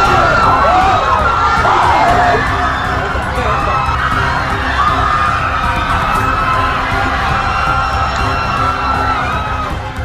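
A crowd of people screaming and wailing in panic over a low, steady music bed. The screams are thickest in the first two seconds or so, then give way to fewer, longer drawn-out cries.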